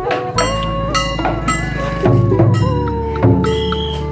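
Vietnamese funeral ritual music: a held melody line that slides in pitch over a steady low drone, with repeated sharp percussion strikes.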